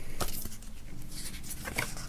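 A CD booklet being handled and opened: faint paper rustling with a couple of light clicks, one near the start and one near the end.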